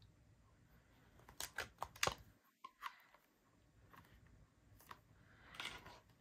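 Faint handling noises of a clear plastic stamp case and craft paper: a cluster of light clicks and taps about a second and a half to two seconds in, a brief dead-quiet gap, then a few more soft taps near the end.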